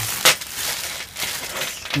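Clear plastic sandwich bag crinkling as a hand handles it, with the loose screws and nails inside shifting; one sharp clink about a quarter of a second in is the loudest sound.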